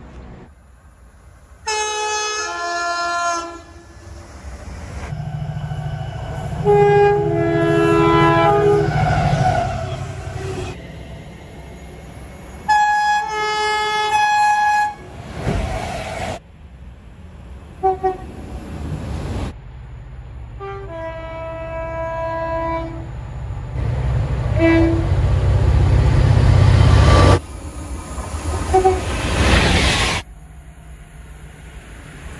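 Horns of trains passing through a station, sounding again and again across several short spliced clips: some long blasts, some short toots. Between them comes the heavy rumble of trains passing at speed, and each clip cuts off abruptly.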